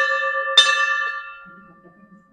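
Hanging metal temple bell ringing: still sounding from a strike just before, it is struck again by its clapper about half a second in, and the ring of several steady tones fades away by about a second and a half.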